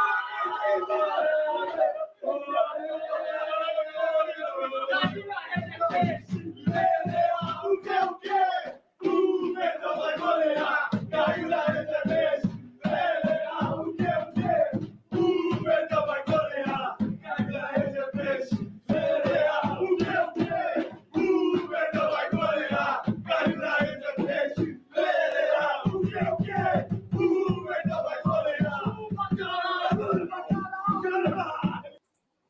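A small group of men chanting a football supporters' song at full voice while beating hand-held drums, a big bass drum and a snare, in rhythm. The drums come in about five seconds in and drop out briefly twice.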